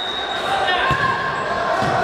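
Children shouting and calling in a large, echoing sports hall, with a couple of thuds as a futsal ball is kicked and hits the wooden floor.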